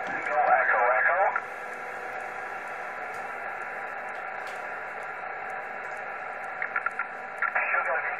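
Steady receiver hiss from a Yaesu FT-857D transceiver with a 70 MHz transverter, listening on upper sideband on the 4 m band. The hiss is narrow and muffled, cut off by the sideband filter. A voice is heard for the first second and a half, and another voice begins near the end.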